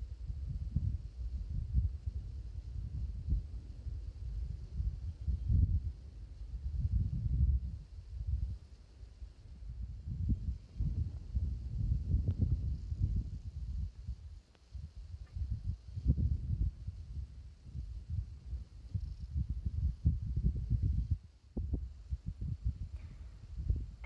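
Wind buffeting the microphone: an uneven, gusting low rumble that swells and dips every second or two.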